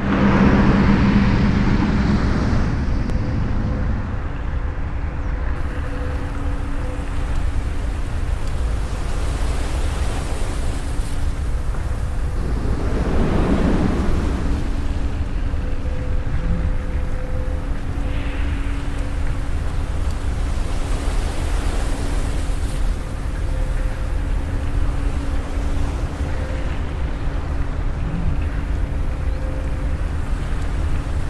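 A steady rushing noise with a deep rumble and a faint held low tone underneath, starting suddenly; it swells once about halfway through, like a wave washing in.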